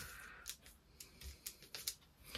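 Faint rustling and a few small, sharp clicks of craft materials being handled at a worktable, several clicks bunched near the end.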